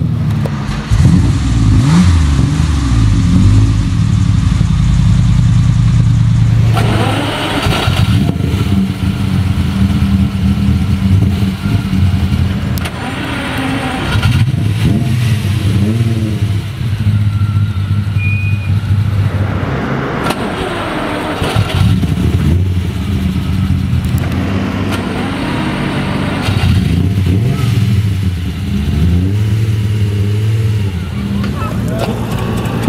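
Ferrari 275 GTB/4's quad-cam V12 running at idle through its quad exhausts, with the throttle blipped several times so the revs rise and fall.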